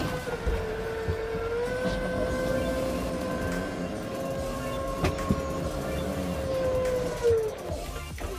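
Electric slide-out motor of a Jayco Redhawk motorhome running as the slide-out room retracts: a steady whine that rises a little about two seconds in and drops in pitch as it stops near the end, with one click about five seconds in.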